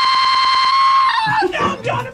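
A raging person's scream frozen into a steady, buzzing electronic tone with a fast stutter, as voice audio sounds when stuck on a lagging connection. About a second in, it drops in pitch and breaks back into garbled yelling.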